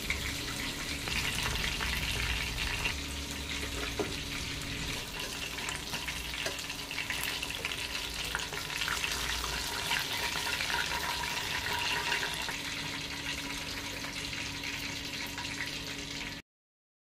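Chicken drumsticks deep-frying in hot oil in a steel pan, a steady sizzle with fine crackling throughout and a few light clicks.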